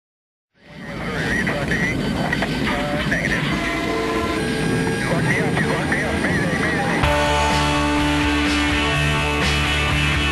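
A noisy intro with voices fades in, and about seven seconds in a garage-rock band starts playing with steady bass and guitar.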